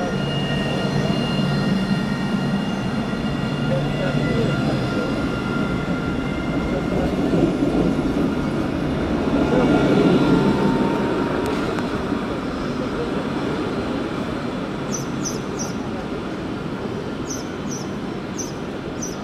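Alstom Citadis electric tram moving off along the platform and passing: steady whine from its electric drive over rolling wheel noise on the rails. It is loudest about ten seconds in as the end of the tram goes by, then fades as it draws away. Faint high chirps near the end.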